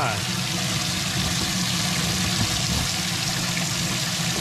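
Water rushing and splashing steadily into a bass boat's livewells from the fill and recirculation jets while both wells fill and recirculate at once, with a steady low hum underneath.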